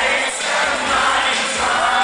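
Live synth-pop band playing loud through a concert PA, with a sung vocal line over it, heard from within the audience.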